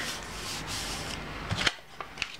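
Paper envelopes rustling and rubbing as hands smooth and move them over a paper page, with one sharp click about three-quarters of the way through.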